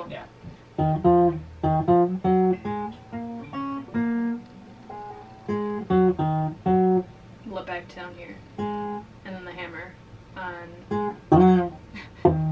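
Guitar picked one note at a time in a short riff, about three notes a second, the phrase played over again with short breaks.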